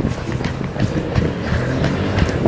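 A car passing close by on the street, its engine running with a steady low hum.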